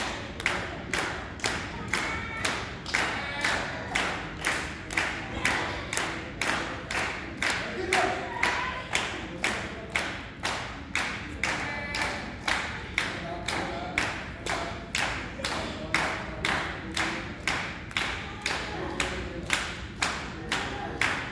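An audience clapping in unison at a steady beat of about two claps a second, urging on a wrestler caught in a hold, with a few short voices over the clapping.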